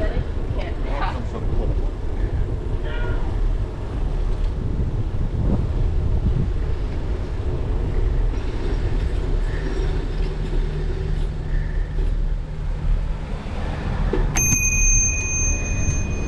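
A bicycle bell rings near the end, its bright ring fading over about two seconds, over the steady low rumble of riding a bike along a street.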